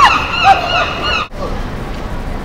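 A woman laughing on a busy street, which cuts off suddenly a little over a second in, leaving the steady murmur of street noise and passers-by.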